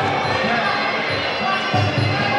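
Muay Thai ring music: a drum thudding steadily a few times a second under a wavering, reedy melody, with faint regular cymbal ticks high up.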